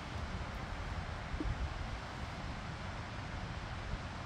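Wind on the microphone: a steady low rumble with an even hiss of outdoor background.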